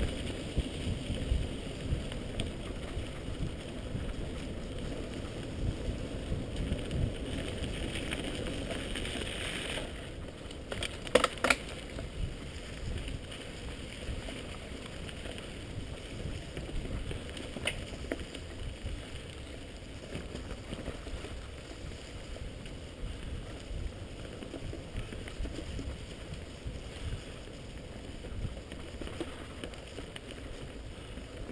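Mountain bike riding fast down a dirt forest trail: a steady rumble of tyres and frame rattle with wind on the microphone, louder in the first third. A few sharp knocks come about eleven seconds in, as the bike hits bumps.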